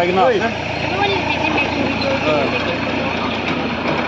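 People talking, with a steady background noise throughout.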